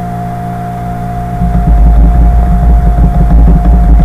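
Steady electrical hum with a constant whine. About a second and a half in, a loud, steady low rumble joins it.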